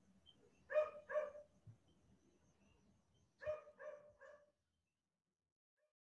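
A dog barking faintly in the background: two short barks, then three more a couple of seconds later.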